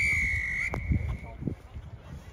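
A referee's whistle blown once: a short, steady, high blast lasting under a second that trails away.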